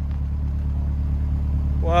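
2024 Chevrolet Corvette Stingray's mid-mounted 6.2-litre V8 idling with a steady deep note.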